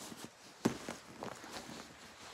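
Handling noise from a pillow in a fabric case rubbing and bumping against the phone's microphone: irregular rustles and soft knocks, with one sharp thump about two-thirds of a second in.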